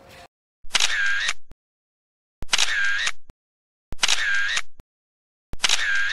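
Camera shutter sound effect, played four times about one and a half seconds apart, each lasting just under a second, with dead silence between.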